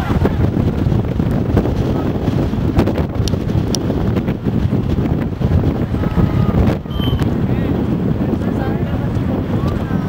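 Wind buffeting the camera's microphone: a loud, constant low rumble, with faint distant voices from the field under it.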